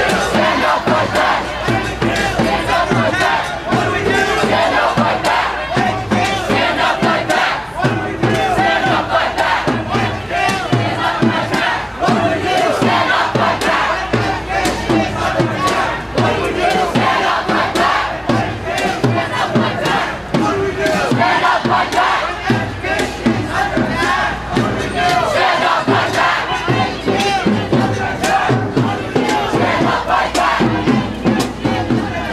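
A large crowd of protest marchers shouting, a loud, continuous mass of many voices.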